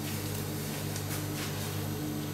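A steady low electrical hum of room tone, with a few faint rustles of cloth as a beanie is pulled off and hair is handled.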